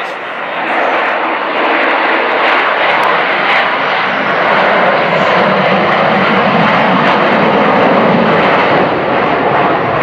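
Jet engines of a Southwest Boeing 737 running loud as it rolls down the runway: a steady, dense roar that builds over the first second and then holds.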